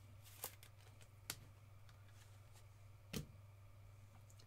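Three faint clicks and taps from a clear hard plastic card case and trading cards being handled, the last about three seconds in the loudest, over a steady low hum.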